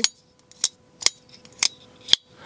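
Sencut ArcBlast button-lock folding knife being fidgeted, its blade snapping open and shut: a few sharp clicks about half a second apart.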